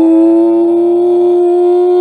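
A person's voice holding one long, loud, sung-like "ooh" on a single steady note that creeps slightly higher.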